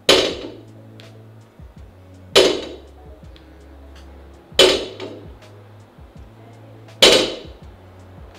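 Loaded barbell with bumper plates set down on a rubber gym floor at the end of each deadlift rep: four sharp clanks with a short metallic ring, roughly every two and a quarter seconds.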